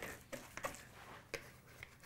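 A few faint, soft taps and sticky handling sounds of a hand scooping wet, shaggy no-knead bread dough out of a plastic mixing bowl.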